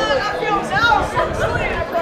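Several people talking at once, overlapping voices in indistinct chatter with no clear words.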